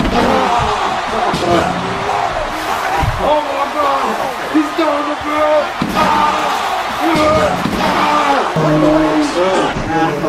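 Music and voices throughout, with a few dull thumps, the loudest about three seconds in, as people wrestle and drop onto a mattress.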